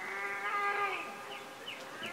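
A man's drawn-out hummed groan lasting about a second, dropping in pitch as it trails off.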